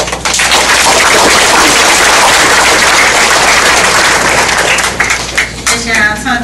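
Audience applauding, starting abruptly and thinning out into scattered claps near the end.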